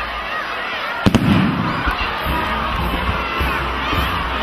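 A single loud firework bang about a second in, a sharp double crack followed by a brief low rumble. It sounds over the steady noise of a crowd with shouting voices.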